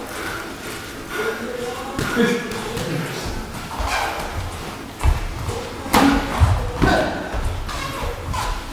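Voices in a large gym hall over the thuds of two boxers sparring in the ring, with a cluster of sharp impacts about five to seven seconds in.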